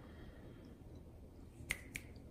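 Two sharp cracks about a quarter second apart near the end, as a 3M primer stick is crushed at its dot between the fingers to release the primer.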